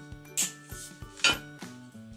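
Wire cutters snipping floral wire: two sharp clicks about a second apart, the second the louder, over background music.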